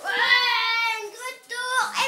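A child's high-pitched voice holding one long note for about a second, then a shorter note that rises and drops near the end.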